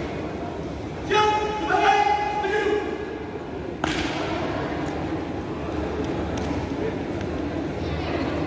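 A drill commander's drawn-out shouted marching command, ringing in a large hall, followed about two seconds later by one sharp stamp as the squad's feet strike the floor together. A low murmur of voices runs underneath.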